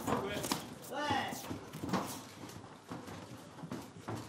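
Kickboxing bout in the ring: scattered thuds of gloved strikes and feet on the canvas, with a shouted voice about a second in.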